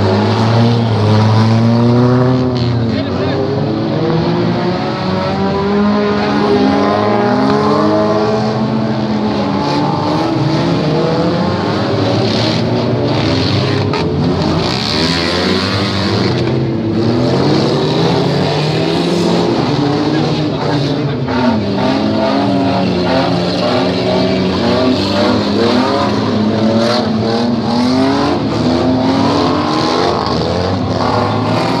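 Several demolition derby car engines revving up and down at once, their pitches rising and falling over one another, with a brief burst of hiss about halfway through.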